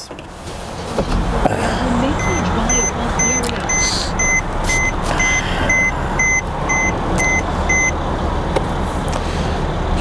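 Mercedes-Benz CLS400's twin-turbo V6 starting about a second in and settling into a steady idle. Over it the car's warning chime beeps about twice a second for several seconds.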